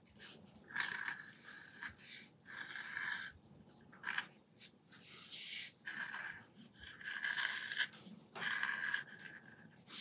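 Metal dip pen nib scratching across textured cotton pastel paper as it draws ink lines: a series of about seven short, scratchy strokes, each lasting under a second.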